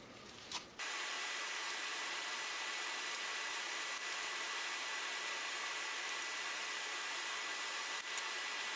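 A steady, even hiss with a faint high whistle in it, starting abruptly about a second in.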